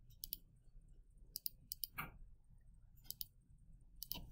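Faint computer mouse button clicks, a few of them in quick pairs, with a short falling sound about halfway through.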